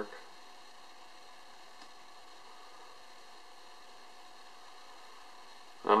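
Low, steady background hiss and hum with no distinct event: room tone.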